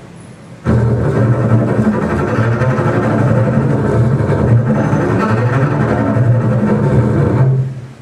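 Double bass plucked pizzicato, a continuous stream of low notes that starts just under a second in and dies away shortly before the end.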